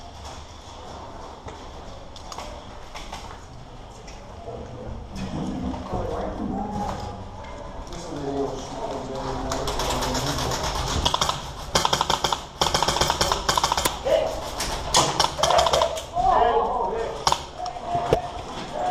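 Indistinct voices talking, with bursts of rapid clicking in the second half that fit airsoft guns firing.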